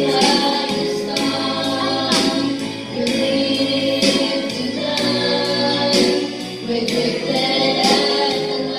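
Gospel song with a choir singing over instrumental backing and a regular beat.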